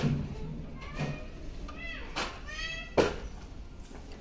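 Cable lat pulldown machine in use: the weight stack clanks sharply at the start and loudest about three seconds in, with smaller knocks between. A short, high-pitched wavering squeal sounds a little before the loudest clank.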